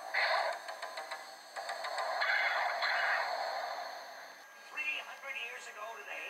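A cartoon soundtrack played through a small device speaker: a rushing, noisy sound effect in two spells. About four and a half seconds in, the audio cuts to another programme, and a voice or music begins.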